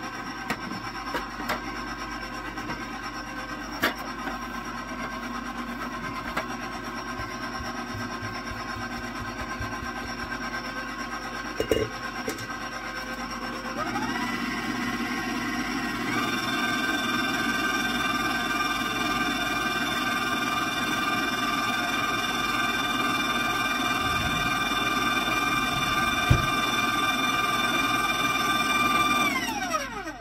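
KitchenAid stand mixer's motor running steadily, turning a dough hook through a stiff dough as flour is worked in. About halfway through it speeds up, its whine rising in pitch and getting louder, and near the end it is switched off and winds down. A few light knocks come from the bowl and shield.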